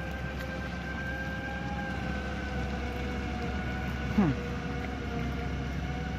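Hyundai wheeled excavator's diesel engine running as the machine drives slowly away: a steady low drone with a thin high whine that sags slightly in pitch.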